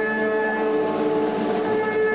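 Amplified electric guitar holding a sustained chord: several steady notes ring out together with no drums under them.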